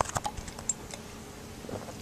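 A quick run of light clicks and taps in the first second, with a few more near the end: handling noise close to the microphone.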